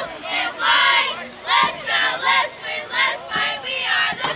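Squad of cheerleaders chanting a cheer in unison, a string of high-pitched shouted syllables in an even rhythm.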